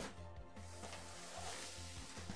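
Quiet background music with steady held tones.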